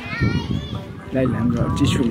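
Voices of people talking, with a high-pitched child's voice in the first half-second or so, over faint background music.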